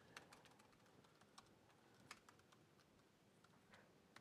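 Faint, irregular clicks of typing on a laptop keyboard.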